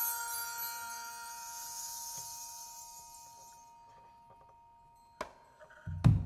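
Struck metal chimes ringing out and slowly dying away, with a high shimmer that fades out around halfway through. There is a single sharp knock shortly before the end.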